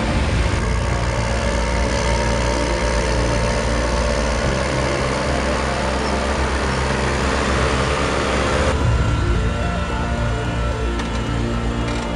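Case IH Puma 165 CVX tractor engine running steadily under load while pulling a reversible plough. The sound changes abruptly about nine seconds in.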